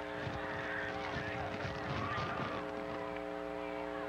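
Open-air football stadium ambience: crowd noise from the stands under a steady droning hum made of several held tones that do not change.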